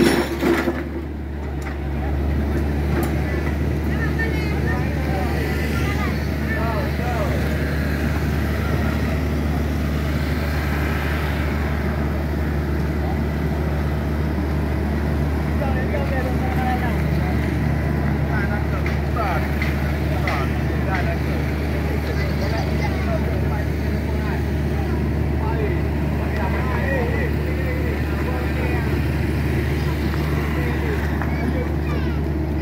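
Small crawler excavator's diesel engine running steadily, with a couple of sharp knocks of the bucket on broken concrete right at the start.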